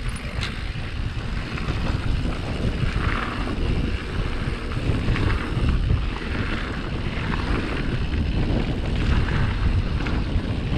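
Wind buffeting the helmet-mounted camera's microphone as a mountain bike descends, with the tyres rolling and crunching over loose gravel and stones.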